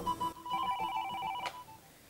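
Electronic telephone ring, a rapidly pulsing tone of several steady pitches lasting about a second, cut off by a click as the phone is picked up. The tail of a guitar music cue is heard at the very start.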